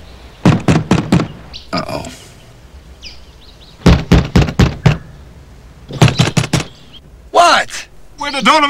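Knocking on an RV's door: three bouts of quick raps, each of four or five knocks, a few seconds apart.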